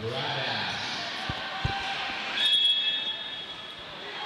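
Referee's whistle, one short, shrill blast about two and a half seconds in, starting a roller derby jam. It sounds over the steady din of the hall and a few dull thumps from skates.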